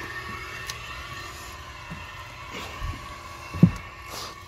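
Steady background hum with faint steady tones, and one brief low thump about three and a half seconds in.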